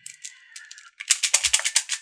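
Plastic beads of a Hasbro Atomix moving-bead puzzle clicking in a quick run as they are pushed along a ring track, starting about a second in.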